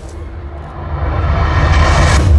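Bass-heavy show music over the loudspeakers. It sounds dull and thin in the highs at first, then swells louder and brighter toward the end.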